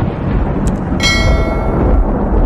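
Intro sound effects: a loud, steady rumbling noise with a bright, bell-like ding about a second in that rings on and slowly fades, the chime of an animated subscribe-and-notification-bell graphic.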